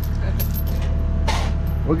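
Excavator engine idling steadily, with a few light metallic clinks of a steel chain being handled.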